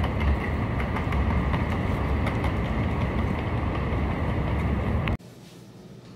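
Loud city street traffic noise: a steady rumble of passing vehicles with strong low-end rumble. It cuts off abruptly about five seconds in, giving way to quiet room tone.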